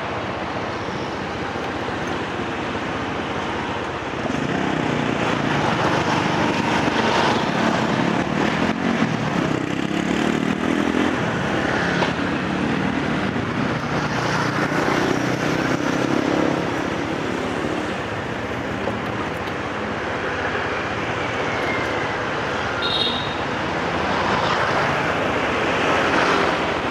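Street traffic heard while moving slowly: motorbike engines running and passing, over a steady haze of road and wind noise. A brief high tone comes near the end.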